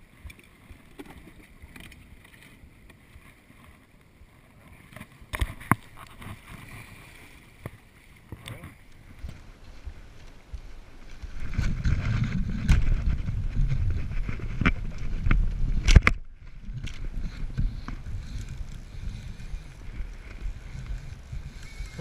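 Wind and water noise on a body-worn camera's microphone beside the sea, with a few sharp handling knocks; about halfway through a heavy low rumble of wind buffeting the microphone takes over.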